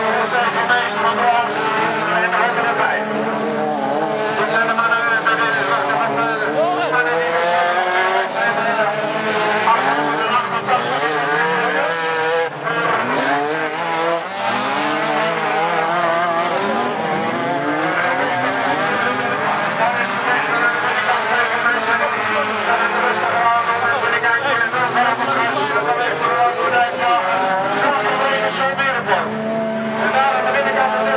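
Several autocross cars' engines revving on a dirt track, their pitch rising and falling as they accelerate and lift off, with crowd voices mixed in.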